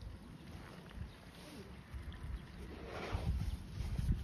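Wind buffeting the microphone, a steady low rumble, with a short hissing rustle about three seconds in.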